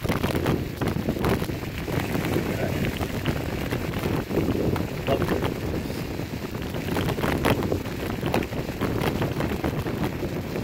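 Kick scooter tyres rolling fast over a wet gravel road: a steady rumble full of small crackles from stones under the wheels, with wind buffeting the microphone.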